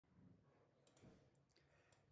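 Near silence with a few faint, sharp clicks about a second in and near the end.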